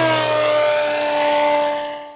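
A light bush plane's engine and propeller on a low, fast pass, the pitch falling as it goes by, then holding steady and fading away near the end.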